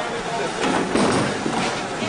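Indistinct background chatter and general noise of a busy bowling alley.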